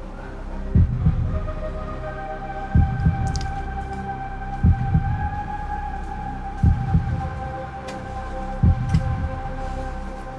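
Suspense underscore: a low double-beat pulse like a heartbeat, five times about every two seconds, under a held synthesizer drone that comes in about two seconds in.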